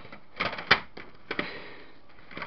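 A few sharp clicks and knocks of small objects being handled and moved on a shelf, the loudest about a third of the way in.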